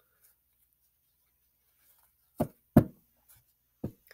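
Three short knocks in the second half, the middle one loudest: tarot cards or a card deck being tapped down on the table.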